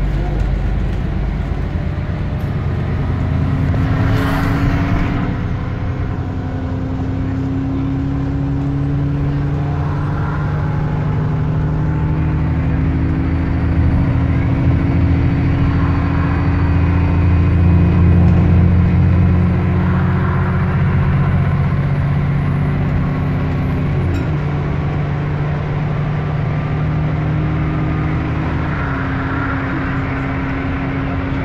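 Dennis E40D double-decker bus's diesel engine heard from the upper deck, a loud steady drone under way with road noise. Its pitch steps a few times, dipping briefly twice in the last third.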